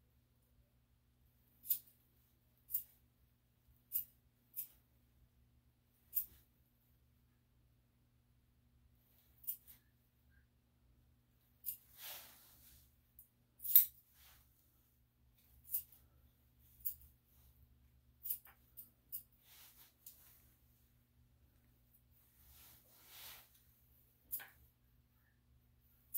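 Sharp single snips at irregular intervals, mostly one to two seconds apart, from hand grooming tools trimming a small dog's feet and nails, with a couple of brief soft rustles between them.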